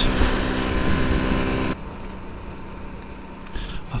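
Honda C90 Cub's small single-cylinder four-stroke engine running at road speed under loud wind rush on a helmet microphone. Not quite two seconds in the level drops abruptly to a quieter, steady engine hum with much less wind.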